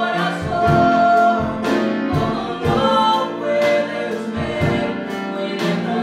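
A woman singing a gospel worship song over instrumental accompaniment with a steady beat.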